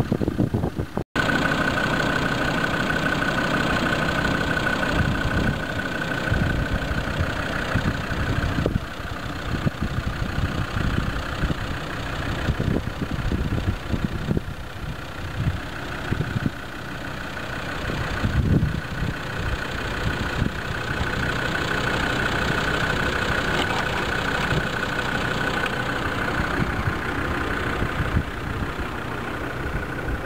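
Land Rover Defender's engine idling steadily, with low rumbles and bumps from wind and handling on the microphone.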